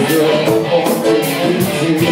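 Guitar music in a jam: held notes over a steady beat of about three sharp hits a second.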